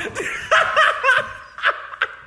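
A person laughing: a run of short laughs, about three a second, trailing off near the end.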